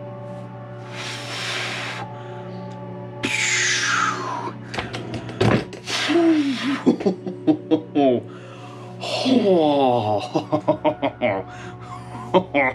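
A man's wordless excited reactions: heavy breaths and gasps, a long falling exclamation, then rapid laughter near the end, over steady background music.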